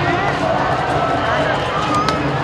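Crowd hubbub: many people talking at once as they walk, with overlapping voices and no single clear speaker.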